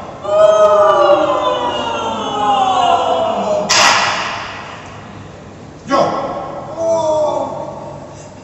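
A ring-modulated voice sliding slowly downward in a long glissando, sounding like several voices moving at once. There is a sharp strike a little under four seconds in and another near six seconds, and after the second strike the gliding voice returns briefly.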